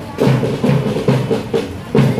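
Parade drumming: a steady, rhythmic beat led by a bass drum.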